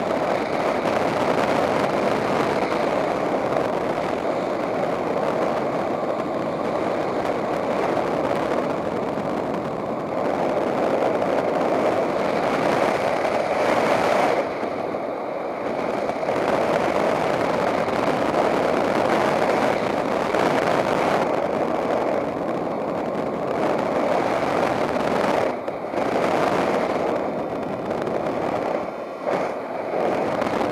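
Steady rush of airflow over the camera microphone in paraglider flight, with brief dips in level about halfway through and near the end.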